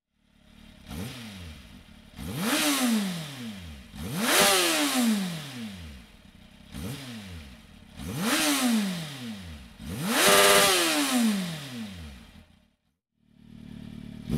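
Kawasaki Z750 S inline-four engine on its stock exhaust, revved by hand in about six throttle blips, each rising and falling in pitch, dropping back to idle between them. The engine sound stops near the end.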